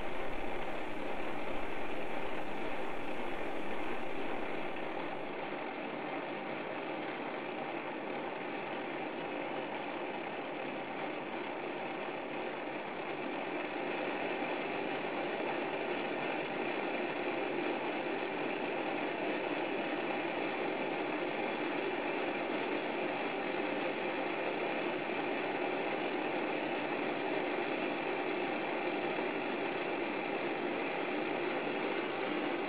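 Steady hiss of a gas torch flame working the end of a glass tube, with a lathe turning slowly underneath. The sound drops a little a few seconds in and grows a little louder again about halfway through.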